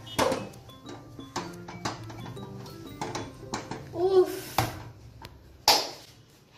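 Background music over repeated knocks and scrapes of a spatula against a steel pot as thick dhido dough is beaten and stirred, about one or two knocks a second. A short voice is heard about four seconds in.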